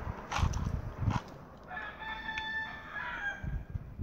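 A rooster crowing in the distance: one drawn-out call of about a second and a half in the middle. It follows two dull thumps near the start.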